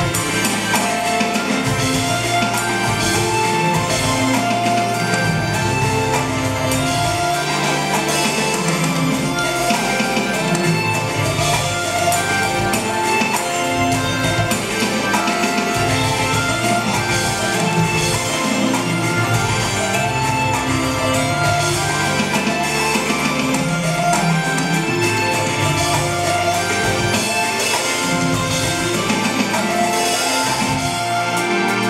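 Roland electronic drum kit played steadily with busy rhythms, together with a backing track of sustained melodic notes and bass.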